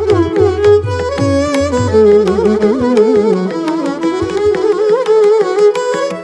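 Two violins playing a Carnatic varnam in raga Bilahari together, each note bent and shaken with gliding ornaments, over mridangam and ghatam accompaniment. The deep drum strokes thin out about halfway through, leaving mostly the violins.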